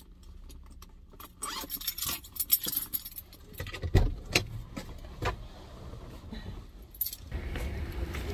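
A bunch of car keys jangling and clinking as they are handled. A dull thump comes about four seconds in, the loudest sound, followed by a few lighter knocks.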